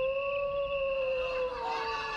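A single long canine howl, held on one steady pitch and sliding down near the end.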